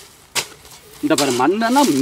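A single short, sharp knock about a third of a second in, followed after a brief lull by a man speaking.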